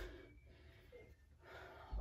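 Faint breathing of a woman catching her breath after a run of jumps, over quiet room tone.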